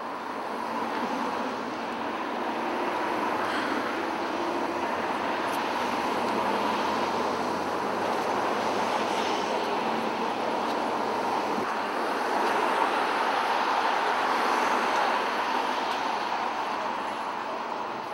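Steady rushing noise of passing road traffic, swelling gradually to its loudest in the second half and easing off near the end.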